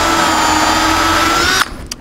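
Cordless drill running a step drill bit through a wooden truck bed board, drilling a pilot hole through to the far side. A steady whine that rises slightly in pitch just before it stops about one and a half seconds in.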